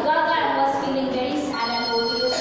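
A woman speaking, with a steady electronic ringing tone coming in over her voice about one and a half seconds in.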